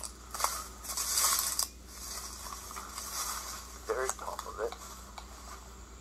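A few footsteps rustling through brush on the woodland floor in the first couple of seconds, with lighter rustles after, as someone walks up to a tree.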